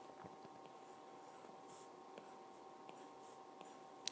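Near silence with a few faint, short scratches of a pen writing strokes, over a faint steady hum.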